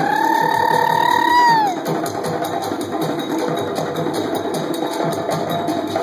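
Djembe hand drums playing a fast, steady dance rhythm. Over the first second and a half a single high held note, possibly a whistle or a high voice, sounds and then drops in pitch as it ends.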